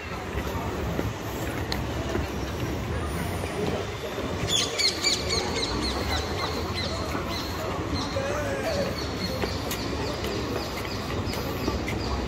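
Outdoor city ambience: a steady low traffic rumble and passers-by talking. From about four and a half seconds in there is a run of high, rapid chirps from small birds.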